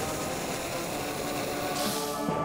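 Cartoon fire-blast sound effect: a steady rush of flame that slowly eases off, with faint music tones coming in under it.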